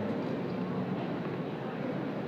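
Steady background din of a large exhibition hall, an even wash of ventilation noise and indistinct distant voices.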